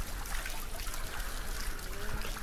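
A steady, even hiss with no distinct sounds standing out of it.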